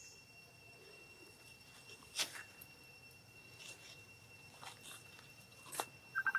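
Quiet forest ambience with a steady, high-pitched insect drone and four sharp clicks spread through it, the loudest about two seconds in.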